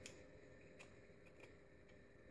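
Near silence: room tone with a few faint, short clicks, likely from hands moving over the workbench.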